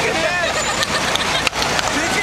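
Busy city street: steady traffic noise with many people talking at once, with a brief dropout about three quarters of the way through.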